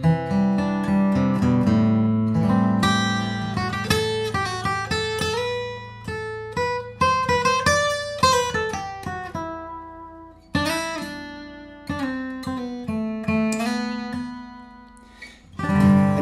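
Bagnasco & Casati D-28-style dreadnought acoustic guitar, with Brazilian rosewood back and sides, a European red spruce top and light 80/20 bronze strings, played with a pick: a picked melody over ringing bass notes. The notes are let die away about ten seconds in and again near the end.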